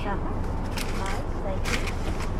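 Car engine idling with a steady low hum, with two brief rustles as food is handed in through the open car window, one a little before the middle and one near the end.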